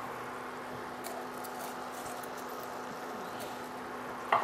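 Beef cubes in thickened braising sauce simmering in a pot on an induction cooktop: a steady soft bubbling hiss with a faint steady hum and a few light ticks.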